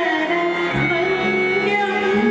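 Female vocalist singing a Hindu devotional stotra live, holding long sustained notes over instrumental accompaniment whose lower notes shift in pitch partway through.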